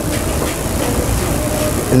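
Steady background noise, a low rumble with hiss above it, holding at an even level throughout.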